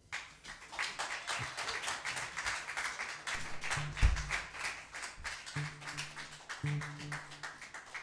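Small audience applauding, a dense patter of hand claps that starts suddenly as the last chord dies away. A single deep thump comes about halfway through, and a few short low electric bass notes follow.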